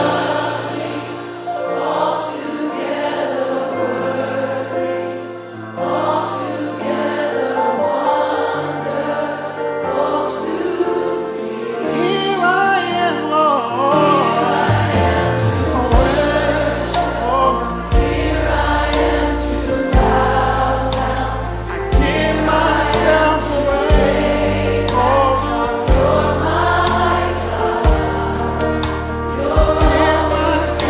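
Gospel choir singing a slow worship chorus with a band. About halfway through, deep bass and steady drum beats come in and the music grows fuller.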